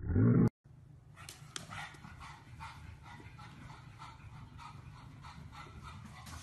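A black pug gives one short, loud bark right at the start. It is followed by a much quieter stretch of indistinct noise with faint light ticks.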